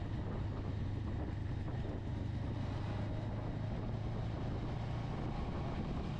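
Motorcycle engine running steadily at cruising speed, a constant low hum under road and wind noise.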